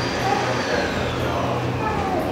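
Steady room noise with a low hum and a faint high tone that slowly falls in pitch.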